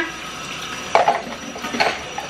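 Plastic cups and dishes being handled at a kitchen sink, with two short clatters, one about a second in and one near the end, over a steady hiss.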